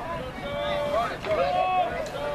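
Raised voices shouting across the field during a lacrosse game, several calls one after another.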